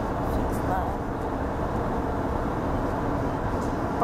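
Steady road and engine noise heard from inside a moving car's cabin.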